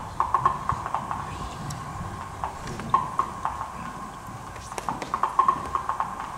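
Eurorack modular synthesizer playing short, clicky percussive pings, all at about the same high pitch, in irregular clusters over a low rumble. The clusters come just after the start, again around three seconds in, and more densely near the end.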